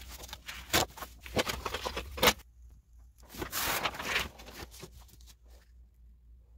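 Sheets of cardstock and their packaging being handled: rustling and sliding, with a few sharp snaps in the first couple of seconds and a longer rustle around the middle.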